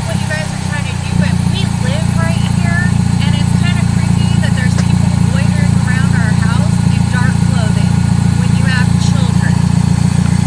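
A car engine idling, a steady low rumble throughout, with faint voices talking in the background.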